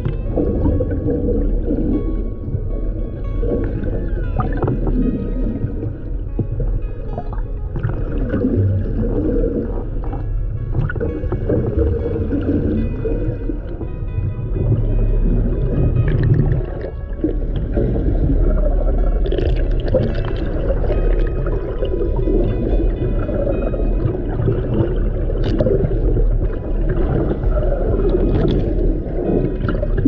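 Orca calls and whistles heard underwater, over a steady bed of background music with held tones.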